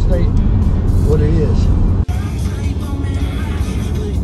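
Car road noise on a highway, heard from inside the cabin as a heavy low rumble, under background music. The sound cuts abruptly about two seconds in to another stretch of driving.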